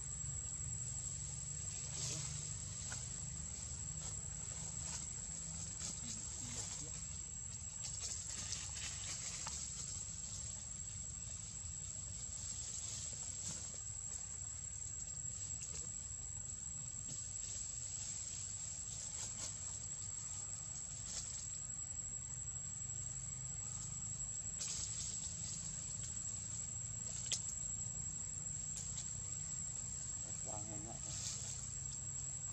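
Outdoor ambience: a steady high-pitched insect drone over a low rumble, with scattered faint clicks.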